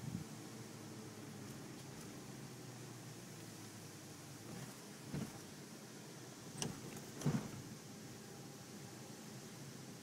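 Cabin noise of a Toyota Prado 4WD driving slowly on a rough dirt track: a steady low engine and tyre hum, with a few knocks and rattles as the vehicle jolts over bumps, the loudest about seven seconds in.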